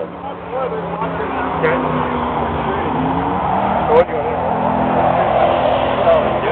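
A car doing a burnout: engine held at high revs with the rushing noise of spinning tyres, growing steadily louder, under crowd voices.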